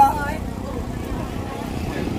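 A voice breaks off at the very start. After it comes steady outdoor background noise: an even low rumble with nothing standing out.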